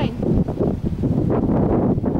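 Wind buffeting the microphone, a loud, uneven low rumbling noise.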